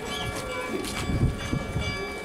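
Footsteps and shuffling of a procession crowd walking on a paved street, irregular low thumps, with several steady ringing tones held behind them.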